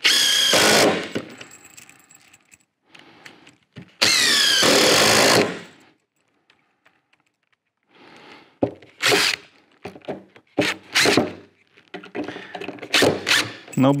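Yellow cordless drill driving screws into a wooden window buck: two short runs, the second falling in pitch as it works. A pause follows, then a series of scattered knocks and clicks.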